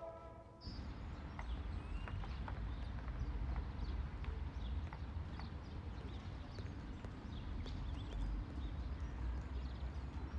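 Outdoor street ambience that starts abruptly about half a second in: a steady low rumble with scattered short clicks and chirps over it.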